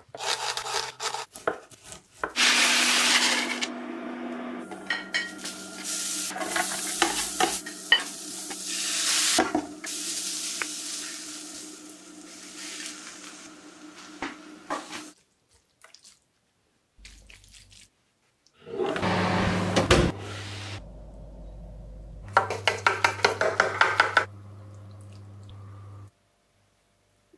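A run of close-up kitchen sounds with short pauses between them. Dry crozet pasta pours into a pot of boiling water, followed by a long stretch of sizzling and stirring in a pan. Later a glass baking dish is set down on a wooden board, and a knife cuts into the crisp cheese-topped gratin with a quick run of crunchy clicks.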